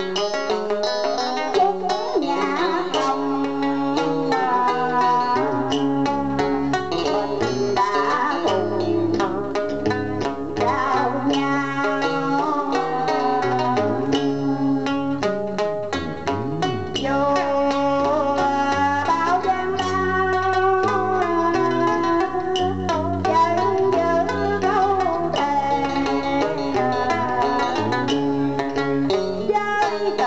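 Cải lương (Vietnamese reformed opera) song: a woman singing into a microphone over plucked-string accompaniment, with deeper bass notes joining about six seconds in.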